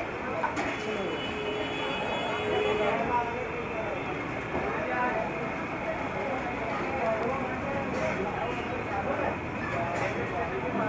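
Busy street ambience: people talking in the background over steady traffic noise, with a brief held hum near the start.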